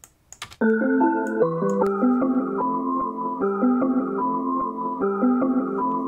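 A chopped melodic loop playing back from the DAW, starting about half a second in: held chords with a melody line on top, notes changing a couple of times a second. It runs through Gross Beat, with the effect's mix level automated to swell in on each bar.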